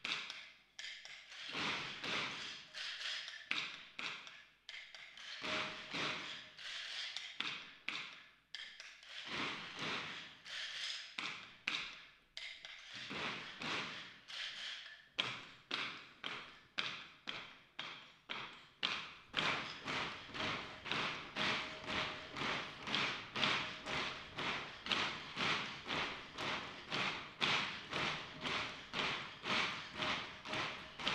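Dancers' wooden sticks striking in a rhythm of sharp dry clacks, uneven with short pauses at first, then settling into a steady beat of about two strikes a second.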